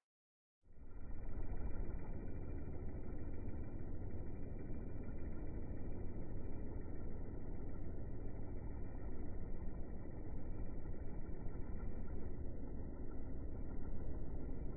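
Slowed-down outdoor sound from slow-motion footage: a steady, deep, muffled rumble with nothing in the upper range. It starts about half a second in, after a moment of silence.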